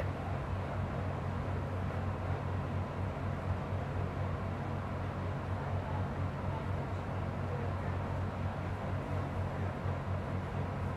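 Laminar airflow cabinet's blower running: a steady low hum under an even hiss of moving air.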